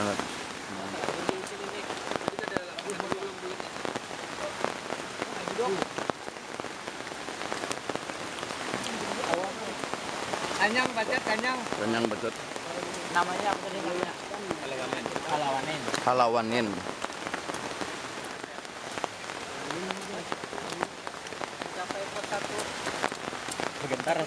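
Steady rain falling, with many small drop impacts ticking through it.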